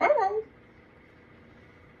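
A man's voice finishes a short spoken question with a rising pitch in the first half second, then quiet room tone with a faint steady hum.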